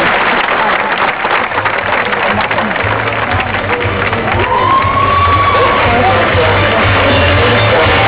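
Audience applause and crowd noise, then rock music with bass and drums comes in about two seconds in and plays on under the crowd.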